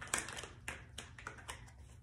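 Several light taps and clicks, spread unevenly through two seconds, over a faint steady low hum.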